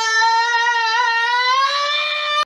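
A man's scream, one long high-pitched yell held at a steady pitch and rising a little toward the end.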